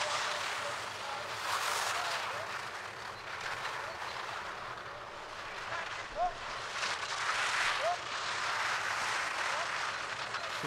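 Skis carving on hard, icy snow: a rough scraping hiss that swells and fades with the turns.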